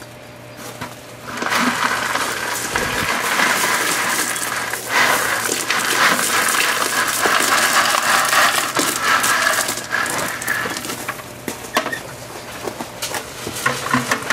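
Gravel poured from a plastic five-gallon bucket onto a gravel bed, covering the heating cables with a top layer. A continuous rattle of stones begins about a second in and thins to scattered clicks near the end.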